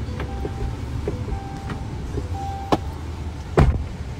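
Steady low rumble of a moving vehicle heard from inside its cabin, with several sharp knocks, the loudest about three and a half seconds in.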